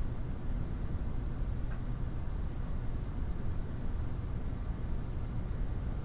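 Steady low background noise, a mix of hum and hiss, with one faint click about two seconds in.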